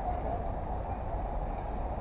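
Steady night-time outdoor background: a low rumble under a constant high-pitched insect drone, with faint insect chirps about twice a second.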